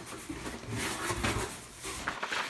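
Cardboard box flaps and brown kraft packing paper being handled, with irregular rustling and a few soft knocks.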